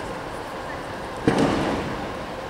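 A single sharp thud a little past the middle, with a short ring after it, from a gymnast's feet landing on a balance beam, over a steady murmur of arena voices and hum.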